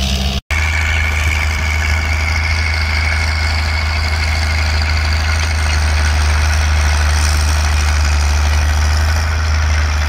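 Caterpillar crawler tractor's engine running steadily under plowing load, a deep even drone. There is a brief dropout about half a second in.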